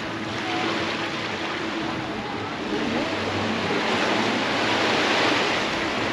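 Surf washing onto a beach: a steady rush of breaking waves that swells to its loudest about four to five seconds in.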